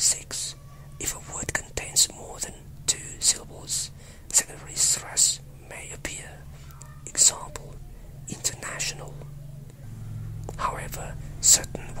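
A person whispering in English, in short phrases with pauses, the s and t sounds coming through as sharp hisses. A faint low steady hum runs underneath.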